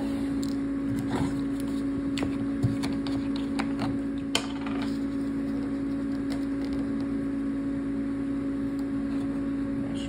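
A steady low hum of a running appliance or small motor, with a few faint clicks and taps of things being handled.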